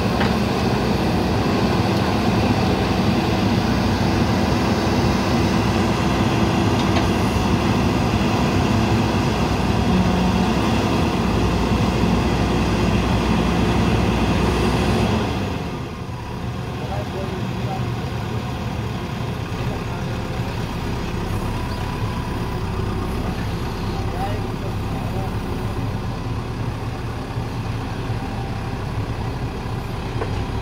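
JCB 3DX backhoe loader's diesel engine running steadily under load while the backhoe digs a trench. About halfway through, the sound drops suddenly and runs quieter from then on.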